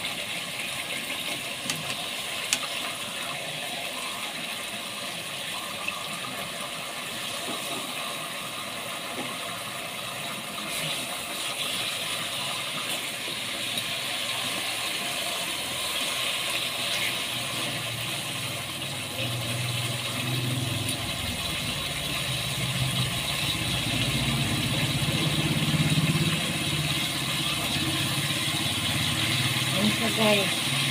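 Pork steaks sizzling steadily in hot oil and sauce in a pot, with a few sharp clicks of metal tongs against the pot. A low rumble builds in the second half.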